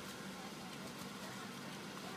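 Car engine idling, a low steady hum heard from inside the cabin.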